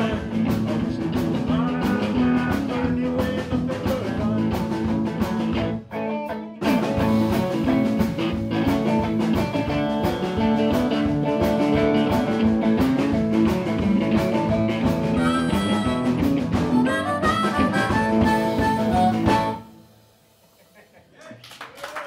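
Live blues band playing, a harmonica wailing over electric guitars, bass and drums. The band stops briefly about six seconds in, then plays on until the song ends a couple of seconds before the close.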